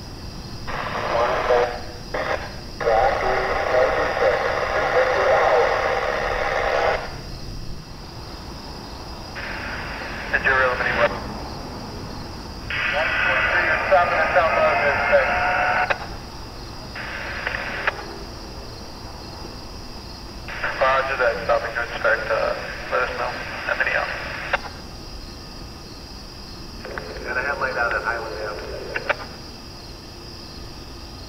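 Railroad radio chatter heard over a scanner: tinny, narrow-band voice transmissions in about half a dozen bursts of one to four seconds, with pauses between them.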